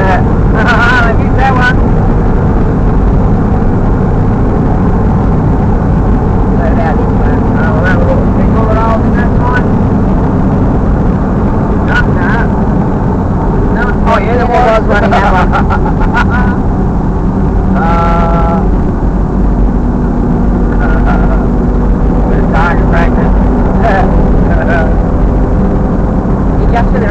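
Vehicle running along a country road, heard from inside the cabin: a loud, steady low rumble of engine and road noise, with snatches of indistinct talk over it.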